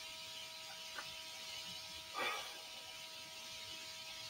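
Faint steady electrical whine of several high tones over a low hiss, with a faint click about a second in and a brief soft rustling noise about two seconds in.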